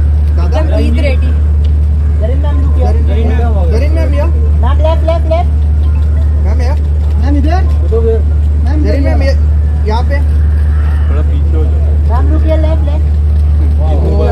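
Steady low rumble of an idling vehicle engine, with people talking and calling out in short bursts over it.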